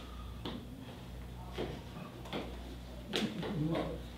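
Quiet room with a steady low hum and a few soft knocks spread through the pause. A brief faint voice comes near the end.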